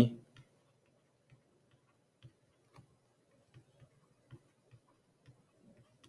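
Faint, irregularly spaced ticks of a stylus tip tapping its writing surface during handwriting, roughly one or two a second.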